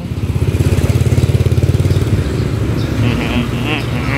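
Motor scooter engine running close by on the street, a fast low pulsing that is strongest in the first half. Short high chirps come in near the end.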